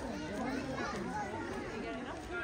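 Several people talking at once, children's voices among them: a steady babble of overlapping chatter.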